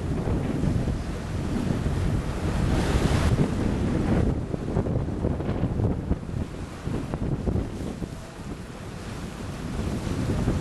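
Wind buffeting the microphone on a moving boat, a steady low rumble with water noise under it, with a stronger gust about three seconds in.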